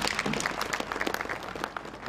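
Audience applauding, many hands clapping together, thinning out near the end.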